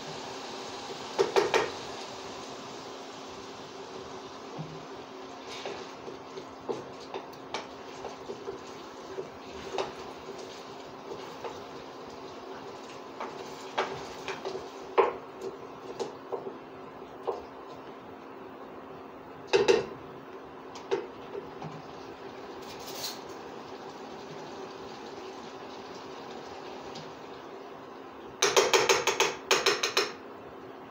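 A cooking utensil knocking and clinking against a small stainless steel saucepan as food is stirred, in scattered light taps with a few louder clinks and a quick run of them near the end. A steady low hum lies underneath.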